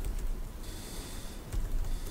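A few keystrokes on a laptop keyboard over low room rumble, with a brief hiss about halfway through.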